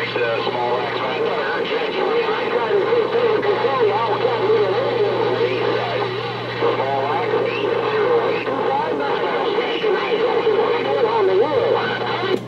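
Garbled, unintelligible voices coming through a Galaxy CB radio's speaker as it receives distant stations on a busy channel, with a steady low hum underneath.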